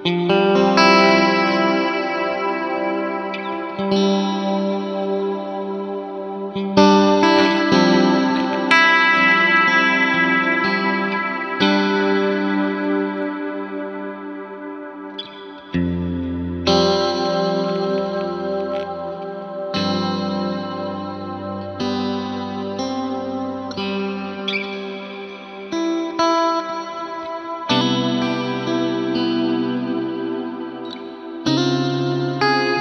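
Stratocaster-style electric guitar played through a Crazy Tube Circuits Splash MK4 reverb pedal: chords struck every few seconds and left to ring out into a long, bright reverb tail.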